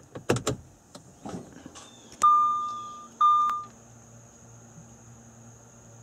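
The ignition of a 2011 Audi S4 being switched on: a few clicks from the ignition switch, then two electronic chimes from the instrument cluster. The first chime fades over about a second and the second is shorter. A faint steady hum follows.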